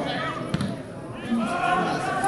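A football kicked once, a sharp thud about half a second in, followed by players shouting on the pitch.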